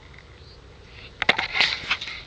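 Rustling and crackling of movement through long grass, starting a little over a second in as a run of sharp clicks and scratchy bursts.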